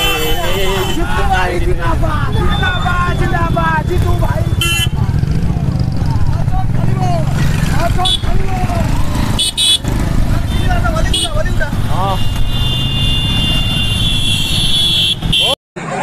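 Motorcycle and car engines rumbling under many voices shouting, with vehicle horns tooting several times and one longer horn blast near the end. The sound cuts off suddenly just before the end.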